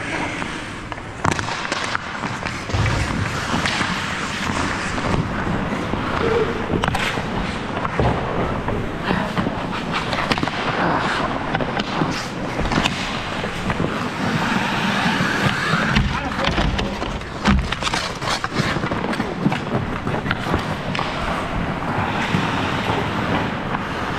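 Ice hockey play: skate blades scraping and carving on the ice, with many sharp clacks of sticks and puck and occasional thuds.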